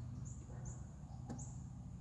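Three short, faint high chirps of a small bird over a steady low background hum, with one light click about two-thirds of the way through.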